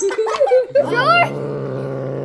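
A person's voice doing puppet noises: short high squeals with swooping pitch, then from about a second in a steady low growling buzz that is held to the end.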